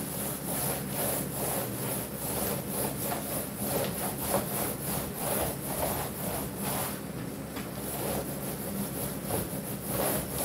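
A long-handled paint applicator being pushed and pulled over a vinyl projector-screen material lying on the floor, making a rhythmic rubbing swish about twice a second, over a steady low hum.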